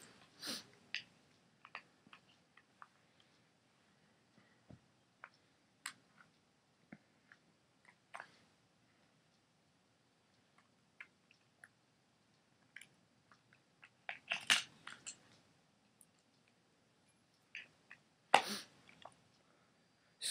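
Sparse small clicks and crackly handling noises from a paintball marker being handled on a tabletop, with two louder short bursts of handling noise near the end.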